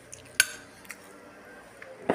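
A fork clinking against a ceramic plate: one sharp ringing clink about half a second in, then a few fainter taps.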